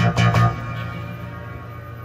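Yamaha TX7 FM synthesizer module sounding notes played over MIDI: a few quick notes in the first half second, then the last one rings on and fades away.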